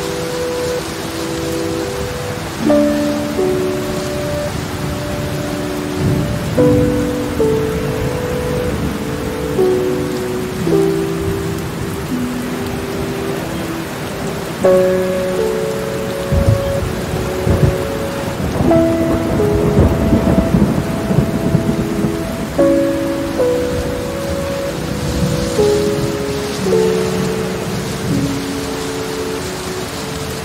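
Steady heavy rain with thunder rumbling, loudest in the middle stretch. Soft sustained music chords, changing about every two seconds, are mixed over it.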